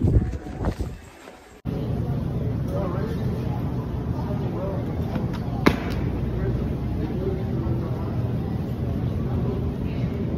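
Handling noise from a phone microphone, loud bumps and rubbing in the first second and a half, then steady background hum and indistinct voices of a large store, with one sharp click a little over halfway.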